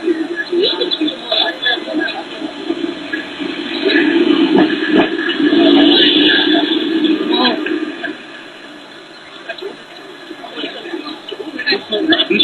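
Indistinct chatter of several people's voices, louder in the middle and dropping away for a few seconds near the end.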